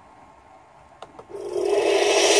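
Quiet room tone, two faint clicks about a second in, then a loud rush of sound with a steady low hum swelling in about halfway: the opening of the played video's soundtrack, leading into music.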